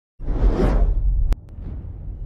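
Cinematic whoosh sound effect with a deep rumble, for a logo intro. It is loud for about a second, then drops suddenly to a quieter low rumble.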